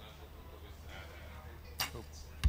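Compound bow shot: a single sharp crack as the string is released and the arrow leaves, near the end, over a low steady hum.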